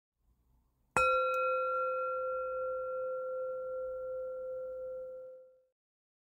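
A singing bowl struck once about a second in, ringing with a few clear overtones that fade slowly and die away over about four and a half seconds.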